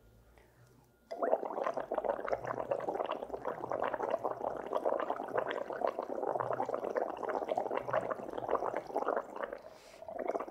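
Exhaled breath blown through a straw into lime water in a stoppered test tube, bubbling continuously. The bubbling starts about a second in and dips briefly near the end. The breath's carbon dioxide is being bubbled through to turn the lime water milky.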